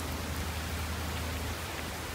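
Steady rain falling, an even hiss at a constant level, with a low steady hum underneath.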